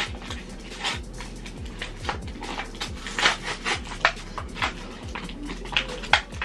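Plastic blister pack and its paper-card backing being torn and peeled open by hand: irregular crinkling and crackling, with sharper snaps of the plastic now and then, as a foil trading-card pack is pulled free.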